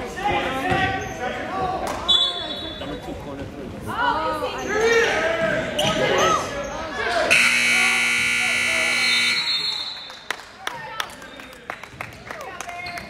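Players and spectators shouting in a gym, then an electronic scoreboard buzzer sounds steadily for about two seconds. Sharp ball bounces follow near the end.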